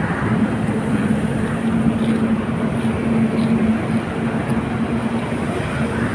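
A steady mechanical rumble, like a running engine, with a low steady hum that fades out about five seconds in.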